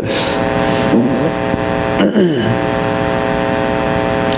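A steady buzzing hum of several even tones, with two brief falling glides in pitch about one and two seconds in.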